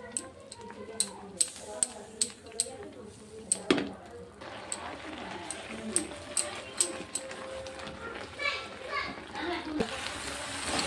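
A wooden spatula stirs a thick, simmering spinach-and-cheese mixture in a nonstick frying pan, clicking and scraping against the pan at about two to three strokes a second in two runs. A soft sizzle from the pan comes in partway through as the mixture cooks down to dry.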